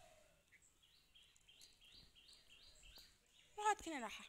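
A bird calling faintly in a run of short repeated chirps, about three a second, followed near the end by a brief voice.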